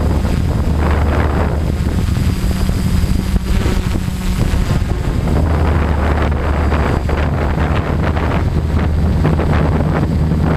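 Motors and propellers of a 450-size multirotor drone heard from its onboard camera: a loud, low, steady drone that shifts pitch slightly as the throttle changes, with wind buffeting the microphone.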